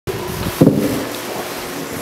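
Microphone handling noise: low rumble and knocks as a microphone is adjusted on its stand, with a short louder sound about half a second in.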